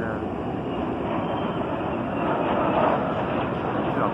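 A formation of jet aircraft flying overhead: a steady jet rumble that grows louder in the second half.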